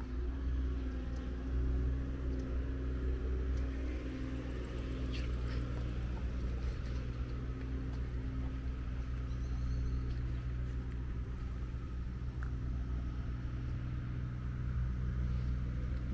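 A steady low mechanical hum, like a motor or engine running, with a faint outdoor background and a few faint ticks.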